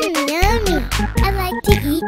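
Children's song music with a heavy bass beat and a lead that swoops up and down in repeated arcs, between sung lines.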